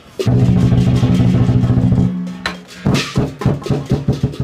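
Chinese lion dance percussion, drum and cymbals: a fast, dense drum roll for about two seconds, then separate loud beats with cymbal crashes.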